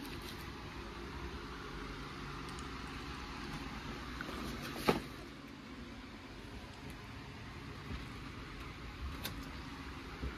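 Steady room background noise with a faint low hum, and one sharp click about five seconds in.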